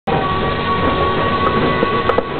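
Steady, loud running noise of a vehicle in motion, with a thin steady whine held over it and a few light knocks near the end.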